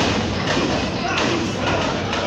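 Thuds of wrestlers' bodies hitting each other and the ring during a brawl in the corner, over crowd voices.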